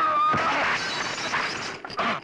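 Glass shattering as a framed photograph crashes onto rocky ground, with a spray of breaking glass for about a second and a half and one more sharp hit near the end. A held high tone runs into the first half second.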